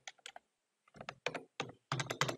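Typing on a computer keyboard: a few keystrokes, a pause of about half a second, then a quicker run of keystrokes.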